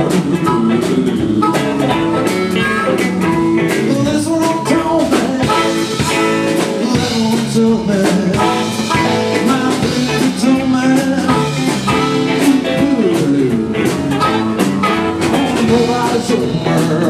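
A live band playing a blues groove on electric guitars, bass and a drum kit, with a singing voice.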